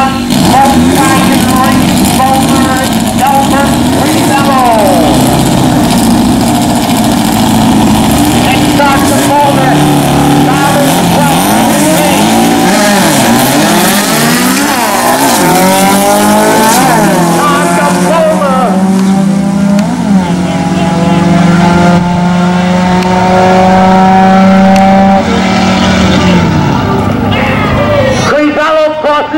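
VW Beetle drag cars' engines revving up and down at the start line. About two-thirds of the way in they launch, and the engines pull hard at full throttle, rising in pitch as they run down the strip.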